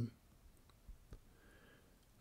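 Quiet room tone with two faint, brief clicks about a second in.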